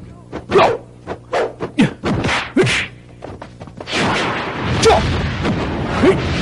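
Martial-arts fight sound effects: a quick run of short swishes and hits, then a longer rushing whoosh from about four seconds in, the sound of a palm strike blasting an opponent away.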